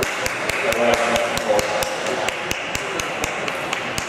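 Spectators clapping and cheering after a badminton rally ends, with one nearby pair of hands clapping sharply and steadily about four or five times a second over crowd voices; the clapping stops near the end.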